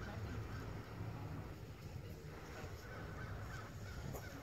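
Low, steady rumble of wind on the microphone, with faint short calls above it now and then.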